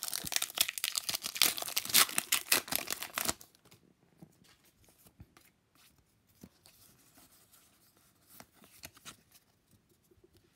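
Foil wrapper of a Pokémon booster pack being torn open and crinkled by hand: a dense crackling for about three seconds that stops abruptly, followed by only faint rustles and small ticks of handling.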